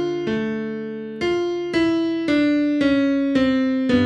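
Piano playing a slow bebop line: a held left-hand chord under single right-hand notes struck about two a second, each a step lower than the last. It is a chromatic approach falling into the third of the chord, and a new bass note comes in near the end.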